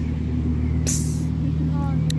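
A small motor vehicle engine running steadily, a low even hum, with a short hiss about a second in.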